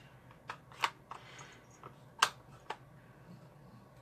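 A handful of light clicks and taps, the loudest about two seconds in, from plastic stamping supplies being handled and set down on a tabletop.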